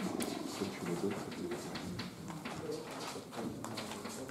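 Chalk writing on a blackboard: a quick run of short taps and scratching strokes.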